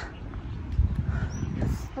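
Low, uneven rumble of wind and movement on a handheld phone microphone carried by a jogger, with her breathing, and two faint high bird chirps a little past the middle.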